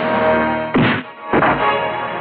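Dramatic film background score of held notes, broken by two sharp percussive hits a little over half a second apart, the first a little under a second in. The hits are the loudest sounds.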